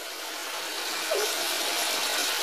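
Chunks of raw meat sizzling in hot sofrito in an aluminium pot, a steady hiss that grows slightly louder.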